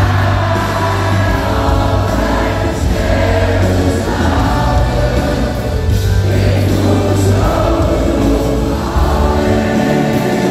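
Loud live pop music amplified through an arena sound system, with heavy steady bass and many voices singing together, as an audience singing along with the performers.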